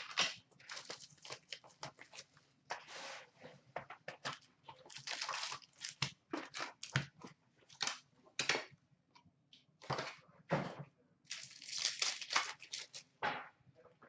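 Upper Deck Trilogy hockey card box and foil packs being handled: a run of short, sharp rustles, scrapes and crinkles as the packs come out of the box and a pack wrapper is torn open.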